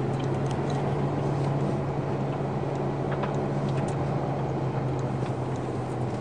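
Ferrari FF's V12 engine heard from inside the cabin, running steadily with a constant low hum and road noise, neither revving up nor down.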